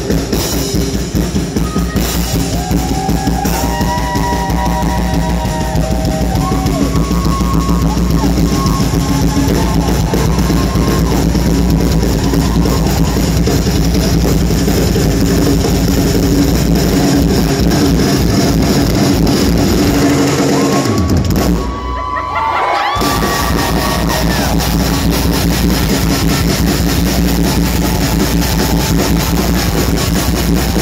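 Live rock band playing loudly, with the drum kit to the fore. About two-thirds of the way in, the low end cuts out for about a second before the full band comes back.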